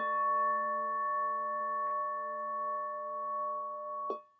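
A meditation singing bowl struck once and left ringing: several steady tones held evenly for about four seconds, then cut off suddenly at the end.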